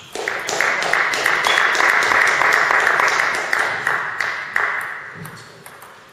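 Spectators applauding at the end of a table tennis rally, a dense patter of clapping that starts at once, holds, then dies away over the last second or two.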